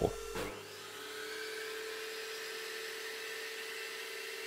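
Table saw switched on about half a second in, its motor winding up with a rising whine and then running steadily at speed. Under it is the steady hum of a dust collector that is already running.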